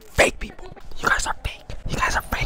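A person whispering close to the microphone, ASMR-style, in short breathy bursts.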